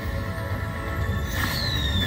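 Slot machine bonus music of sustained, held tones as five more free spins are awarded. About a second and a half in, a sharp hit is followed by a high falling glide.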